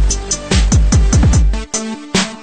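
Electronic dance background music: deep kick drums that drop sharply in pitch over steady hi-hat ticks and held synth notes, the bass cutting out about three-quarters of the way through.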